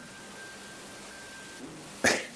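Quiet room tone: a low, steady hiss with a faint thin high tone that fades out near the end.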